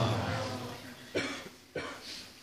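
The end of a sung line of a Pashto naat dying away, then two short coughs about half a second apart, picked up by the microphone.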